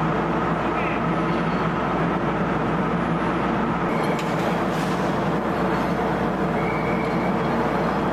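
Steady, loud machinery drone, with a slight shift in its tone about four seconds in.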